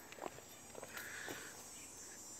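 Quiet woodland ambience with a few faint clicks and one short, high, buzzy note about a second in.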